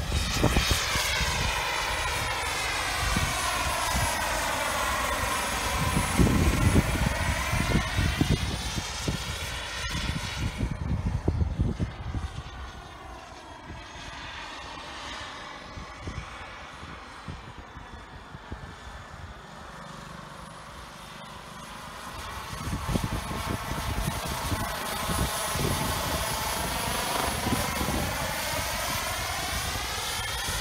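A Jet Ranger helicopter flying by, its turbine and rotor noise swelling with a sweeping, phasing whoosh as it passes close. The sound drops to a quieter, distant drone from about twelve to twenty-two seconds, then grows loud again as it comes back.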